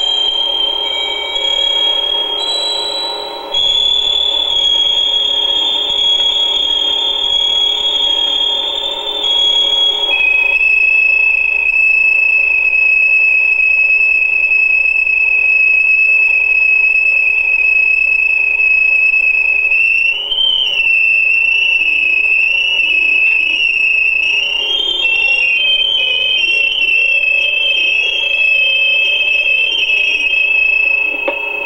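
Loud, steady, high-pitched electronic tones on the soundtrack. They hold a pitch for several seconds, step to a new pitch, waver briefly about two-thirds of the way through, and split into two close tones near the end, over a duller lower hum.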